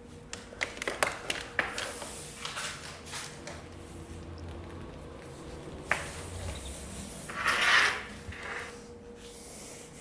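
Handling noises of a long plastic LED light tube being lifted and set down: a quick run of sharp clicks and knocks in the first two seconds, another click about six seconds in, and a short scraping rustle near eight seconds. A faint steady hum runs underneath.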